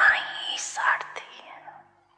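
A woman speaking softly into a microphone, her voice trailing off near the end.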